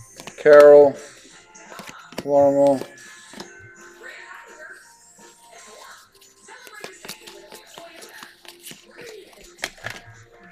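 A man's drawn-out 'um' twice, each about half a second, near the start. Then faint clicking and sliding of stiff chrome trading cards being flipped through by hand, with faint background music under it.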